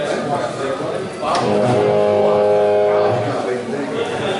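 Amplified electric guitar: a chord is strummed about a second in and left to ring for about two seconds.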